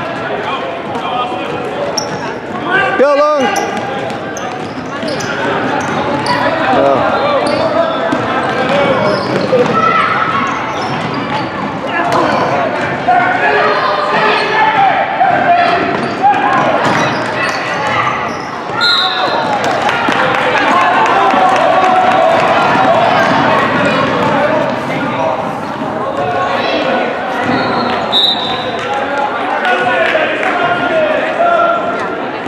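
Gym crowd chatter during a youth basketball game, with a basketball bouncing on the hardwood floor throughout. A loud wavering tone sounds about three seconds in. Short high referee-whistle blasts come about two-thirds of the way through and again near the end.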